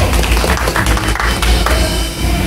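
A live rock band with drums playing loudly from a neighbouring stage, with hand clapping mixed in.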